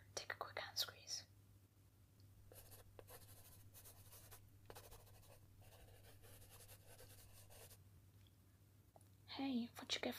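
A short whisper, then writing on paper: a faint run of scratchy strokes lasting about five seconds, as the test is filled in.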